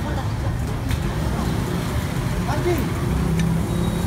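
Busy street ambience: a steady low rumble of road traffic with faint voices, and a couple of light clicks.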